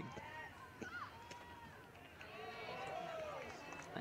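Faint, distant voices of players and spectators calling out over a light outdoor hubbub. They grow a little louder toward the end.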